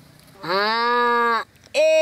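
A man's voice holding one long shouted vowel for about a second at a steady pitch.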